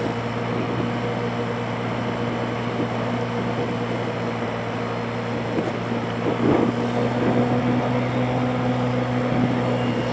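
Motorbike engine running steadily while riding, a constant hum, with wind buffeting the microphone and a stronger gust about six and a half seconds in.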